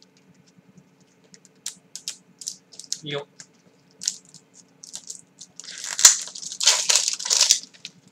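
Cellophane wrapper on a cigarette pack crinkling as it is torn and peeled off. Small scattered crackles come first, then, about six seconds in, a sharp click and a longer stretch of loud crinkling.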